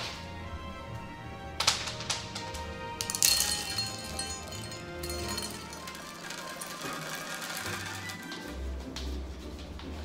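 Dry dog kibble poured into a stainless steel measuring cup, rattling into the cup and scattering onto the granite countertop, with the sharpest clatters about two and three seconds in. Background music plays throughout.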